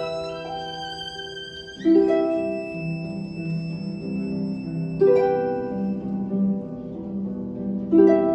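Harp, violin and cello playing a slow, gentle passage: held string notes with harp chords plucked about two seconds in, again about five seconds in and once more at the end, each left ringing.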